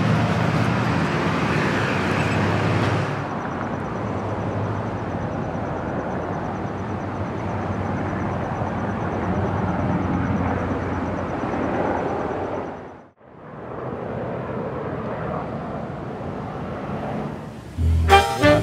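Steady outdoor background noise on a camcorder's microphone, with a change in its character about three seconds in and a momentary dropout about two-thirds of the way through where the footage is cut.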